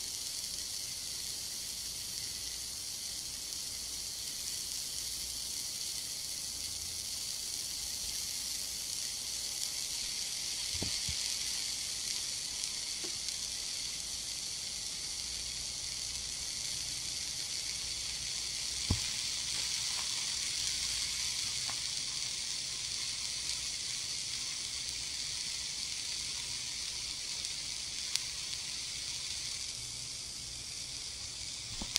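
Ear candle burning close at the right ear: a steady soft hiss with a few faint pops.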